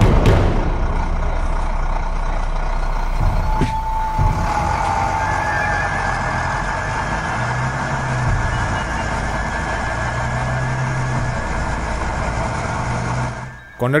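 Bus engine running with steady road noise as the bus drives along, cutting off shortly before the end.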